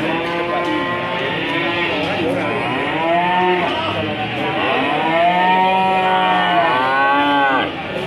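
Cattle mooing: several long calls that rise and fall in pitch, overlapping one another, the loudest near the end before the sound cuts off suddenly.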